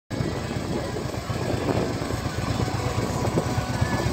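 A 2011 Harley-Davidson Electra Glide Ultra Limited's Twin Cam 103 V-twin idling through Vance & Hines exhaust, with a steady low pulse.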